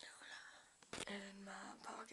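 Quiet whispering, then a short soft voiced sound from a girl's voice.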